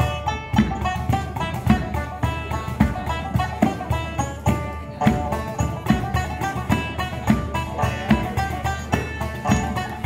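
Irish reel played live on banjo with bodhrán and cajón: a fast, even run of picked banjo notes over a steady driving drum beat.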